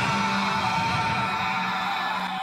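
Music with sustained held notes.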